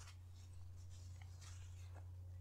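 Near silence: a steady low hum under a few faint, short scratchy rustles.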